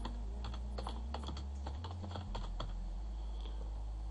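Computer keyboard typing: a quick, uneven run of keystrokes, about four a second, over a steady low hum.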